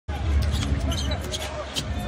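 A basketball being dribbled on a hardwood court, several sharp bounces over a steady arena crowd murmur and low rumble.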